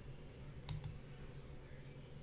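A computer mouse click: a quick press and release heard as two small ticks close together, over a faint steady low hum.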